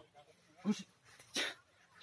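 Two short, sharp yelps, the first a little before one second in and the second, louder and sharper, about a second and a half in, with quiet between them.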